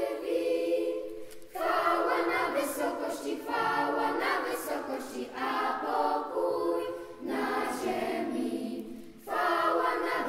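A children's choir singing a Polish Christmas carol unaccompanied, in sustained high-voiced phrases with short breaths between them about a second and a half in, around seven seconds, and just after nine seconds.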